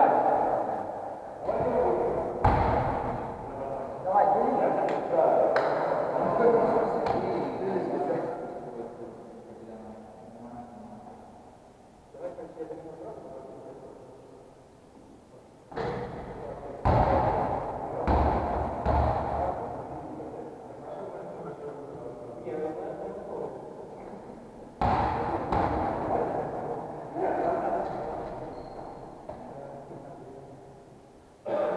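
Indistinct voices talking in a large, echoing sports hall, with a few sharp thuds scattered through.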